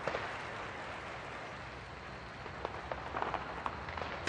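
Fireworks sound effect, fairly quiet: a steady crackling fizz with a run of sharp pops in the second half.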